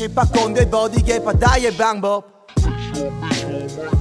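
Hip hop track with rapping over a beat of deep, falling kick drums. About two seconds in, the beat and vocal cut out for about half a second, then come back in.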